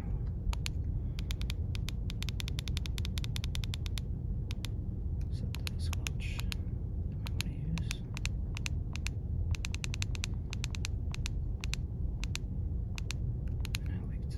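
Runs of quick clicks from the buttons of a Baofeng UV-5R handheld radio's keypad, pressed over and over to step through its menu, with short pauses between runs, over a steady low hum.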